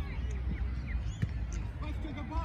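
Sideline sound of a youth football match: distant voices of players and spectators over a low steady rumble, with one sharp thump of the ball being kicked a little over a second in.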